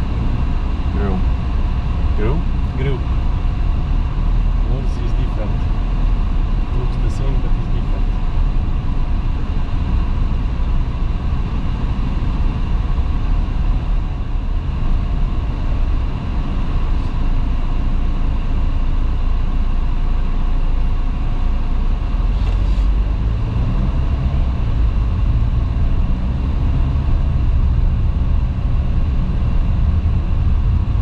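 Steady cabin noise of a car driving along a country road: engine and tyre rumble heard from inside the car, running evenly at a constant speed.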